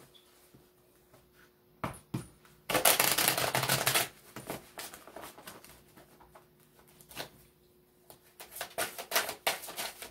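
A tarot deck being shuffled by hand: a couple of taps, then a dense riffle of the two halves lasting about a second and a half about three seconds in, followed by lighter card flicks and a quick run of clicks near the end.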